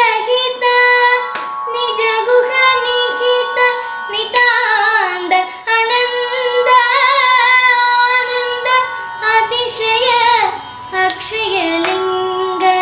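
A boy singing a Carnatic melody in raga Revathi, holding long notes and bending them with wavering gamaka ornaments, over a steady backing drone.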